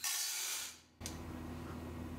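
Uncooked macaroni pouring from a bowl into a stainless steel Instant Pot inner pot, a hissing rattle that fades and cuts off just under a second in; then faint room tone.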